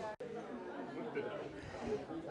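Faint murmur of background voices in a room, broken by a brief dropout just after the start.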